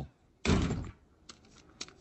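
A single heavy thunk about half a second in: the trapdoor in the floor being pulled open, an animated-show sound effect. A few faint small clicks follow.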